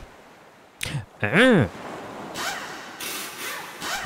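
Added cartoon sound effects: a quick whoosh about a second in, then a short voiced grunt that rises and falls in pitch, a smaller pitched glide, and a softer hiss near the end.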